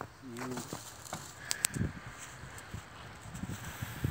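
Faint crunching and rustling of snow as dog droppings are scooped up by hand, with a short hummed voice near the start and a couple of sharp clicks about one and a half seconds in.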